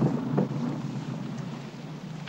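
Wind buffeting the microphone over a boat's steady low running noise on an open deck, with a short louder sound about half a second in.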